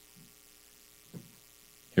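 Faint steady electrical mains hum in the microphone feed during a pause in speech, with one brief soft sound about a second in.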